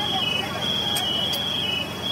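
A steady high-pitched trill that steps back and forth between two close pitches, over a murmur of voices, with a few short sharp clicks.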